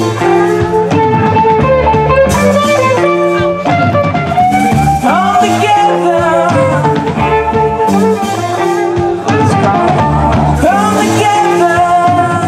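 Live band playing: electric guitars with bending lead lines over a repeating bass pattern and a drum kit, with a cymbal crash every two to three seconds.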